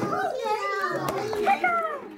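Young children's high-pitched voices chattering and calling out, with no clear words.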